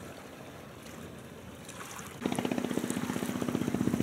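A steady background hiss, then a little past two seconds an engine comes in suddenly and close, running with a steady low hum and a rapid, even beat.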